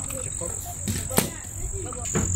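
Crickets chirping in a steady high-pitched drone, with a single sharp click a little past a second in.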